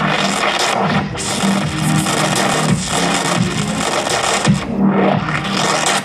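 Loud live electronic music: a dense, noisy texture over a low bass line, played from a laptop and controllers.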